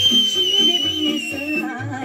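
Dance music with a steady beat, cut across by a loud, high whistle that swoops up and holds for about a second and a half, sagging slightly in pitch before it fades: a person whistling.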